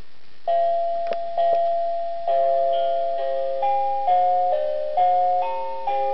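LeapFrog Baby Tad toy playing an electronic lullaby tune through its small speaker, its bedtime-mode music after announcing night-night time. It is a slow melody of clear, held notes starting about half a second in, with a new note every half second or so.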